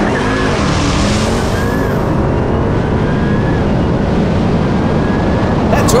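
Cars accelerating hard in a drag race between a Lamborghini and a Ram TRX: loud, steady engine and wind rush with a deep rumble and a faint whine that rises a few times.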